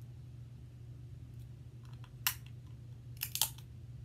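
Snow crab leg shell cracking as it is worked open: one sharp crack a little over two seconds in, then a quick cluster of cracks about a second later. A steady low hum runs underneath.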